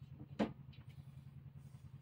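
A single sharp knock about half a second in, as a wall-mounted TV on a swing arm is pushed back toward the wall, over a steady low hum.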